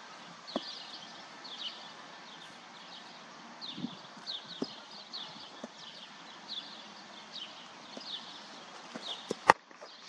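A cricket bat strikes the ball once near the end, a single sharp crack that is the loudest sound here. Short, high chirps repeat every half second or so throughout, like a small bird calling.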